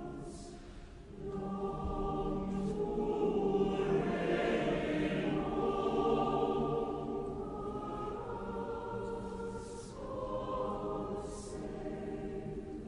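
A large choir and concert-hall audience singing with an orchestra, in long held notes. The singing swells louder in the middle and eases off towards the end.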